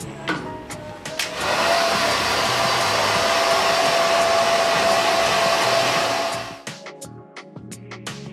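Hand-held hair dryer switched on about a second in, blowing steadily with a thin constant whine as it dries wet, freshly treated hair. It cuts off suddenly near the end.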